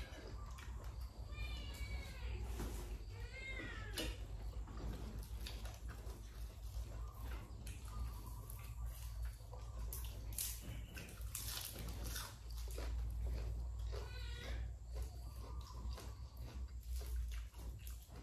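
A cat meowing a few times, with two clear, rising-and-falling meows in the first four seconds and fainter ones later, over eating sounds: short clicks and chewing, and a steady low hum.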